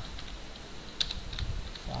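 Typing on a computer keyboard: a few keystrokes, the sharpest about a second in.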